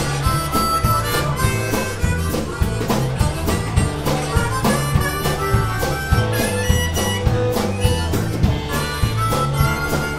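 Harmonica played into a vocal microphone, leading over a live rock band, with bass and drums keeping a steady beat.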